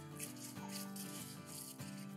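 Soft background music: a gentle melody of held notes, played quietly. Under it, faint rubbing of plastic-gloved hands pressing minced meat around dry spaghetti.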